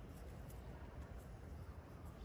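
Quiet room tone with a steady low hum and faint hiss; no distinct sound stands out.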